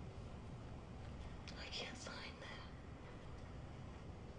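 A brief breathy, whispered human sound about a second and a half in, over a low steady hum.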